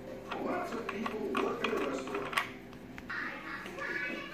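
Light clicks and knocks of a wooden dress-form tripod stand being handled as its top pole is screwed onto the base, over faint background voices.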